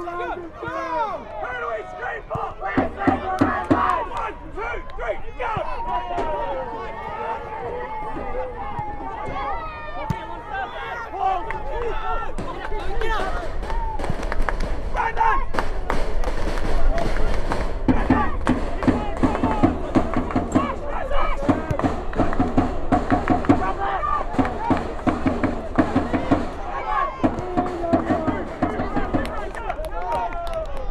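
Several voices of footballers and spectators shouting and calling over one another, with occasional short knocks and a low rumble that swells in the middle stretch.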